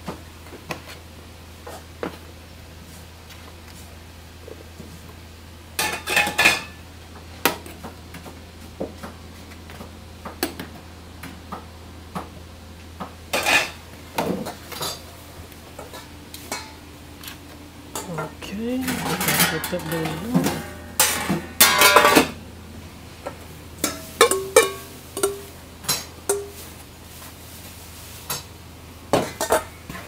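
Metal serving spoons clinking and scraping against stainless steel steam-table pans and bowls as food is dished into takeout boxes, with pan lids set down. The clatters come irregularly and are busiest about two-thirds of the way in, over a steady low hum.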